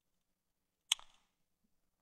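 A single short click from a computer mouse, about a second in, against near silence.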